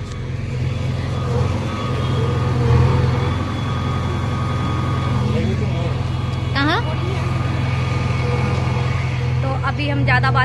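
Engine of excavation machinery digging in the street, running steadily throughout: a low, continuous hum with steady tones above it, loud enough to drown out talk.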